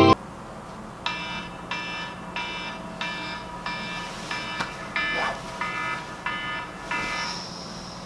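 Smartphone alarm ringing: a repeating electronic alarm tone, about three notes every two seconds, beginning about a second in and stopping a little after seven seconds as it is switched off. A faint steady low hum lies beneath.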